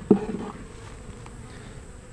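Honey bees buzzing steadily around an opened hive as a frame is lifted out, with a brief louder sound right at the start.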